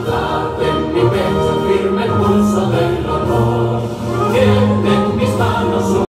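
Slow choral music: many voices singing long, held notes.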